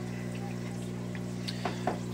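Aquarium air pump and sponge filter running: a steady low hum with faint bubbling water.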